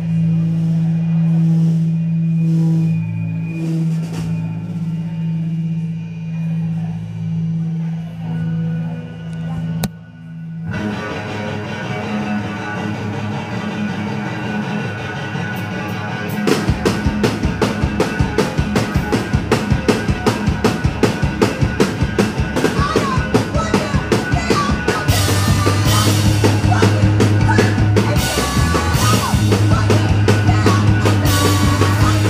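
A rock band playing live. Low bass notes are held for about the first ten seconds, the sound dips briefly, and then the song starts. About halfway through the full drum kit comes in with fast, steady beats and the whole band plays loud.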